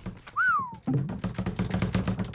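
Cartoon soundtrack: a short whistle-like tone that glides down in pitch, then music of quick light taps over a low pulsing note, like a sneaking cue.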